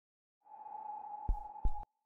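A steady electronic beep-like tone with faint hiss comes in about half a second in, with two low thuds a third of a second apart near the end, then it cuts off suddenly.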